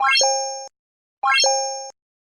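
Animated button-click sound effect: a quick rising run of notes ending in a held chime that fades. It plays twice, about a second and a quarter apart.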